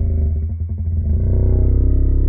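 Slowed-down audio from a slow-motion clip: a loud, deep rumbling drone with shifting pitch, which sounds like a monster growling.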